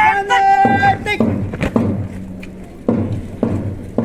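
An announcer's voice over a public-address system trails off, then a few sharp knocks sound in two pairs, each about half a second apart.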